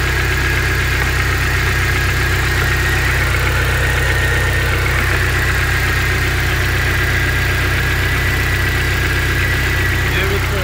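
Volkswagen Passat 1.8T (AEB) turbocharged four-cylinder engine idling steadily, heard close up from the engine bay, with a steady high-pitched whine over the engine note.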